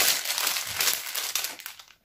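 Clear plastic packaging crinkling as it is handled: a dense crackle that dies away just before the end.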